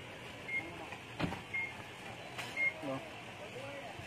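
Three short, high-pitched electronic beeps about a second apart, with a sharp knock about a second in and men's voices in the background.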